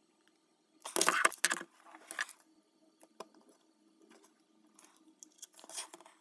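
Handling noise from an eyeshadow palette: a brief scrape-like rustle about a second in, a shorter one just after two seconds, then faint clicks as fingernails work at a pressed shadow pan to pry it loose from its glued well.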